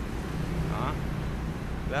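Komatsu 1.5-ton forklift's engine running with a steady low rumble as the forklift rolls slowly forward.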